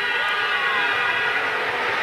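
Large arena crowd making a steady, loud din as the bout ends, with held, whistle-like tones running through the noise.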